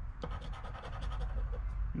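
Metal scratcher coin scraping the latex coating off a scratch-off lottery ticket in short scratching strokes.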